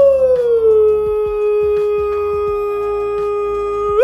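A man's long drawn-out 'ooh', one held vocal note that slides down a little in the first second, then holds steady and bends up briefly at the end.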